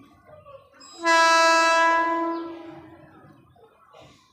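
An Indian Railways train's horn: one long steady blast about a second in, held for over a second and then fading away.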